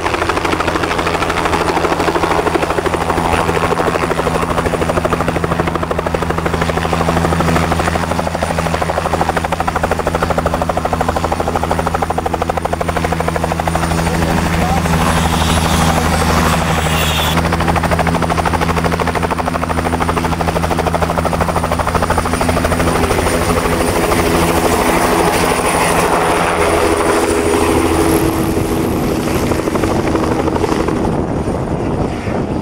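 Bell 505 Jet Ranger X helicopter hovering low: the steady beat of its two-bladed main rotor over the high whine of its single turboshaft engine. In the last few seconds the pitch of the sound shifts as it lifts and turns away.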